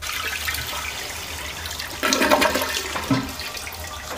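Toilet flushing: water rushing into the bowl and swirling down the drain, growing louder about two seconds in.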